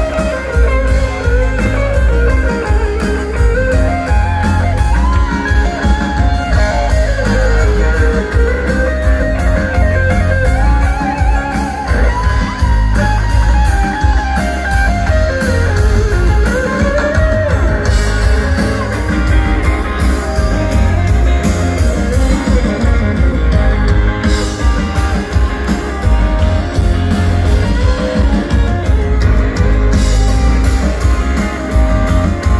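Live rock band playing an instrumental break: an electric guitar plays a lead line that glides and bends up and down over a steady bass and drum groove.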